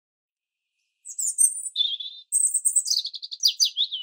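Songbird singing, starting about a second in: a series of high trilled phrases ending in a run of quick falling notes.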